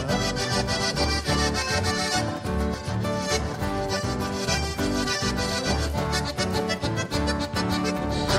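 Instrumental break of gaúcho folk music: a button accordion plays the lead over acoustic guitar, with a steady bass rhythm.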